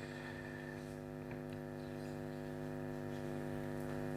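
Steady electrical mains hum from the sound system: a constant buzzing drone made of a stack of even tones.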